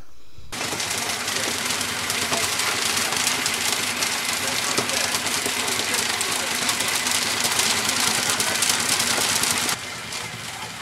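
Engine-driven palm oil processing machinery running: a loud, steady mechanical din with fast knocking, cutting in about half a second in and cutting off just before the end.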